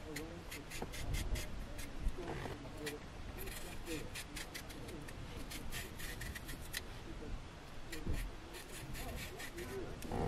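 A small kitchen knife peeling the skin off a cucumber: many short, crisp scraping strokes of the blade through the peel, at irregular intervals.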